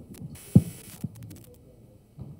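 Two dull, low thumps about half a second apart, the first much the louder, with a short hiss around the first.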